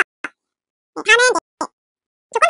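Speech only: a short spoken phrase about a second in, with complete silence before and after it.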